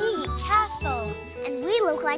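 Light children's background music with tinkling chime sounds and deep bass notes, with voices talking over it.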